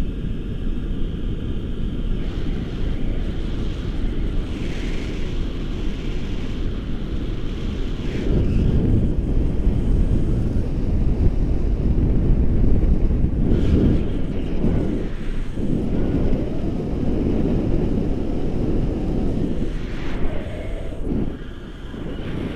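Airflow buffeting the camera microphone in flight under a tandem paraglider: a loud, steady rumble that grows louder from about eight seconds in and eases near the end.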